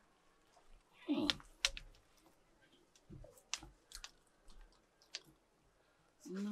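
A person eating with their hands: scattered lip smacks and mouth clicks of chewing, with a short falling sound just after a second in.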